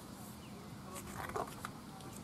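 Quiet outdoor background with the soft handling and rustle of a paperback picture book's pages, a few light clicks, and a brief faint call a little past a second in.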